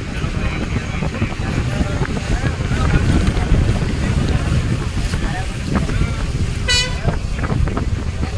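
Harbour ferry boat underway: a steady low rumble of engine, water and wind on the microphone, with passengers' voices. A brief horn toot sounds about seven seconds in.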